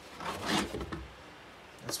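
Brief rustle of a plastic RC car body shell rubbing against the hand as it is handled and turned, about half a second in, then quiet.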